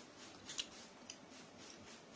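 Faint clicks and small crackles from eating a balut egg with a plastic spoon. The sharpest click comes about half a second in, with a smaller one about a second in.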